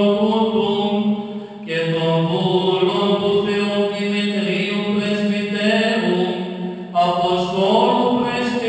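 Greek Orthodox Byzantine chant: a male voice sings a slow melodic line over a steady held low drone note, with short breaks between phrases about one and a half seconds in and about seven seconds in.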